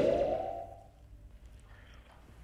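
Tail of a TV show's logo bumper sound effect: a rising electronic sweep that levels off and fades out within the first second, leaving only faint background noise.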